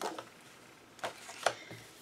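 Sheets of scrapbook paper and book pages being handled: a few brief, quiet paper rustles and light taps, one at the start, one about a second in and another shortly after.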